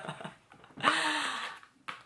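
A woman's short hummed vocal sound, about a second long, rising and falling in pitch, with a light click near the end from the cardboard toothpaste box being handled.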